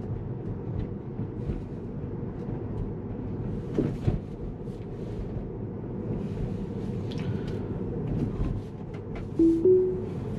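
Steady tyre and road noise inside a Tesla's cabin at low speed, with a few faint clicks. Near the end the car sounds a short two-note rising chime, its signal that the self-driving system has engaged.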